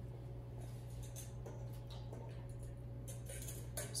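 Quiet room tone with a steady low hum, and a few faint light clicks and taps from a stainless steel mixing bowl and utensil being handled, more of them about three seconds in.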